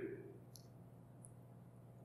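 Near silence: room tone with a faint low steady hum and a small faint click about half a second in.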